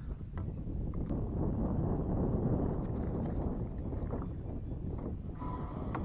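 Wind and water noise on the microphone of a kayak-mounted camera: a steady low rumble with a few faint clicks. A faint steady high tone begins near the end.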